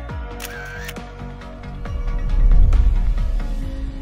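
Background music with steady sustained notes, a short sharp sound effect about half a second in, and a deep low swell that builds to the loudest point around two and a half seconds and then fades.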